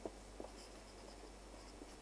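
Faint scratching of a felt-tip marker writing on paper, with a couple of soft ticks near the start.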